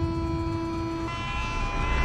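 A train horn sounding a steady two-tone blast, one note switching to a second note about a second in, over a heavy low rumble.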